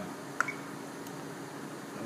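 Steady low hum of room tone, with one small click about half a second in.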